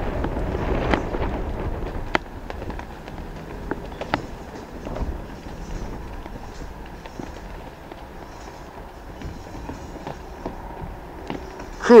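A jumpstyle dancer's shoes landing and stamping on a wooden deck: irregular sharp thumps over a low rumble.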